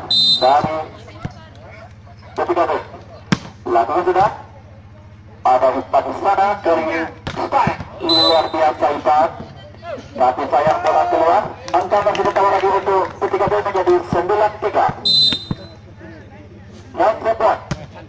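A man's commentary in broken bursts of speech over a steady low hum. A referee's whistle gives three short blasts, near the start, about 8 seconds in and about 15 seconds in. A single sharp smack, a volleyball being hit, comes about 3 seconds in.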